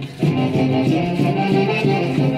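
Band music playing a lively traditional melody for dancing, with a brief dip in loudness at the very start.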